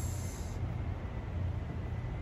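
Steady low rumble of a large hall's ventilation, with a short high hiss at the very start.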